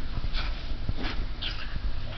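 A wet dog rubbing his head and body against a cotton towel on carpet, the cloth rustling and scuffing in a few short bursts.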